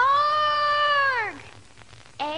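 A girl's voice giving one long, cat-like meow, lasting about a second and a half: it rises at the start, holds its pitch, then slides down at the end.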